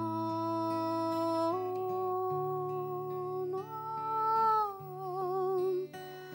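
A woman singing a slow ballad in long held notes that step upward twice and then fall, the last note with vibrato, accompanied by an acoustic guitar.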